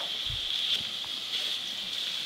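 Bacon and olive oil sizzling steadily in a frying pan, while a chef's knife slices lengthwise through a leek on a wooden cutting board, with a soft thump about a third of a second in.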